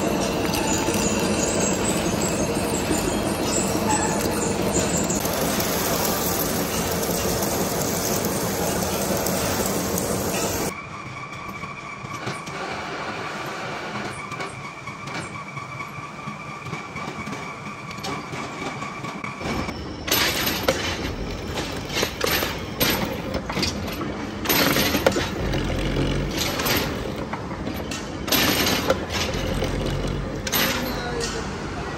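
An old lathe turning a large steel shaft, a dense steady metal-cutting noise with a held tone. About eleven seconds in it cuts to a quieter machine run with a steady whine. From about twenty seconds in comes a stretch of rapid clicks and knocks as a keyway slot is cut into the steel shaft.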